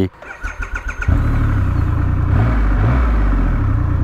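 Triumph Rocket 3R's 2.5-litre three-cylinder engine being started: the starter cranks rapidly for about a second, then the engine catches and settles into a steady idle, its speed wavering briefly near the middle.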